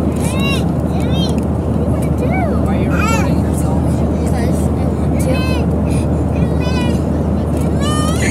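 Airliner cabin noise with the engines running: a steady, loud low rumble. Several short, high-pitched voices come and go over it.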